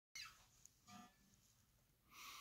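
Near silence: room tone with two faint brief sounds, a soft squeak right at the start and a faint knock about a second in.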